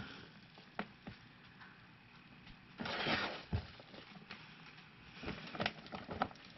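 Faint rustling of hands sifting through shredded-paper bedding and apple scraps in a worm bin, with a louder rustle about three seconds in and a few light crackles.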